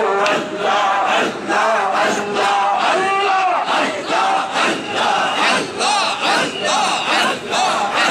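Group of men chanting zikir loudly in unison through microphones, the voices rising and falling in a steady repeated pulse about once a second.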